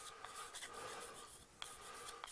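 Chalk writing on a blackboard: faint scratching with light taps of the chalk against the board, the taps coming more often near the end.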